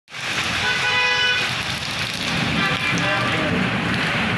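Heavy storm rain hissing steadily, with a vehicle horn sounding once for just under a second about a second in.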